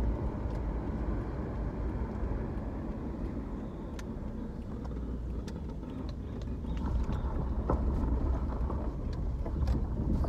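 A car on the move, heard from inside its cabin: a steady low rumble of engine and tyre noise.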